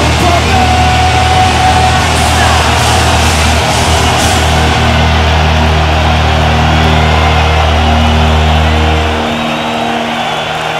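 Heavy metal band holding a final distorted guitar and bass chord over a large cheering crowd; the chord cuts off about nine seconds in, leaving the crowd noise.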